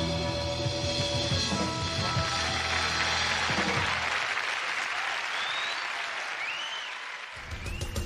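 A rock band's song ending on held chords, giving way to audience applause and cheering with a few short whistles. New guitar music starts abruptly near the end.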